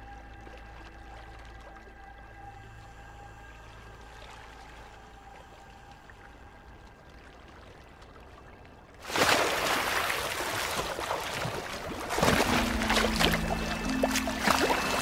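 Soft, tense background music with a low drone, then about nine seconds in a sudden loud burst of water splashing and churning as a polar bear surfaces with a seal it has caught underwater. The music swells again near the end.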